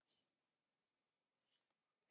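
Near silence: room tone, with a few very faint high-pitched chirps in the first second.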